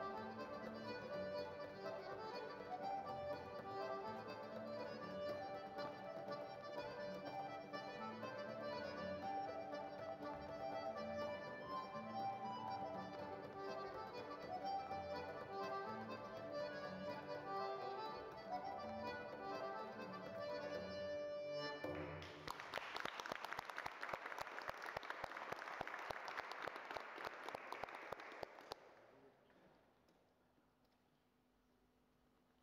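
Accordion playing a lively traditional tune for Irish dancing, which stops about three quarters of the way through and gives way to applause that dies away near the end.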